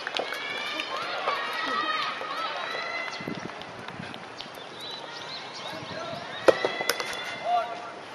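Distant voices of players and spectators calling and chatting on outdoor tennis courts, with two sharp knocks about six and a half seconds in.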